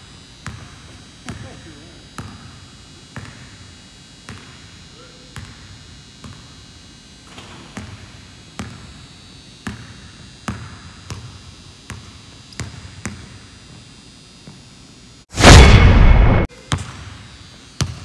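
A basketball bouncing on a hardwood court about once a second, each bounce echoing in the empty arena. About three seconds before the end, a loud burst of noise lasts about a second.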